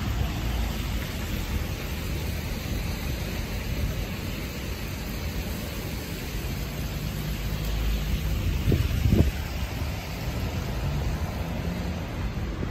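City street traffic on a wet road: a steady low rumble of passing cars and tyre noise. Two short low thumps about nine seconds in are the loudest sounds.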